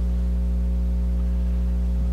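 Steady low electrical mains hum in the recording, a buzz made of a stack of even, unchanging tones.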